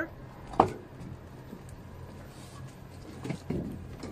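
A single sharp click with a brief metallic ring about half a second in: the latch of the electric van's cab door being pulled open. A faint steady low hum runs underneath, with a couple of small knocks near the end.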